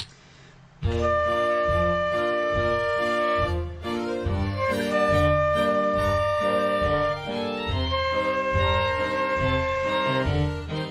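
Flute playing long held whole notes (D, D, then C) over a backing band track with a steady repeating bass pulse, starting about a second in.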